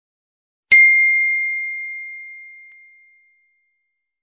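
A single bright bell ding, a notification-bell sound effect: one sharp strike about three-quarters of a second in, ringing on one clear tone and fading away over about two and a half seconds.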